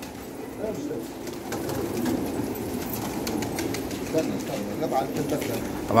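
Many domestic pigeons cooing together in a loft, a steady low chorus of overlapping coos.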